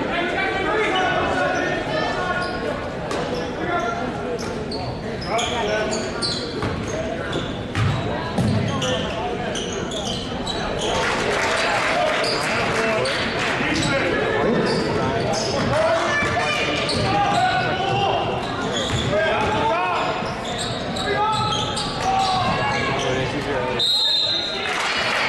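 Many voices of a gym crowd and players talking and calling out, echoing in the large hall, with a basketball bouncing on the hardwood court.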